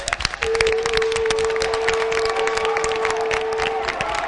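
A horn blown in one long steady note, held for about three and a half seconds, over dense hand clapping.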